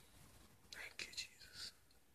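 A person whispering briefly, a short breathy phrase of about a second, close to the microphone in an otherwise near-silent room.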